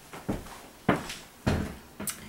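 Footsteps on a hard floor: three evenly spaced thuds, a little under two a second, as someone walks across a small room.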